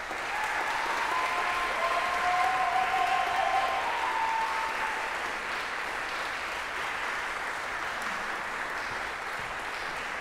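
Audience applauding, starting suddenly as the piece ends and at its loudest in the first four seconds, then carrying on steadily. A few long calls from the audience ring out over the clapping in the first five seconds.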